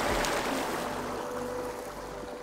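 Steady rush of a small stream's running water, fading out gradually.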